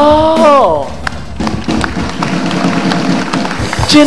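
A man's long drawn-out vocal call, held for about a second and sliding down in pitch at the end, followed by background music.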